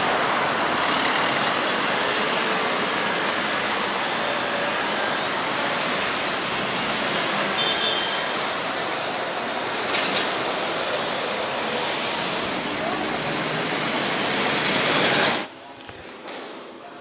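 Steady city street traffic noise with a rushing, wind-like haze, as heard while travelling through town; it cuts off suddenly near the end.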